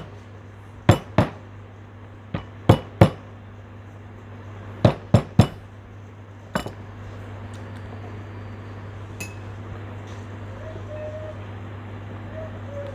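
A pestle pounding pieces of fresh ginger flat on a wooden cutting board. There are about nine sharp knocks in groups of two or three, which stop about two-thirds of a second past the six-second mark, over a steady low hum.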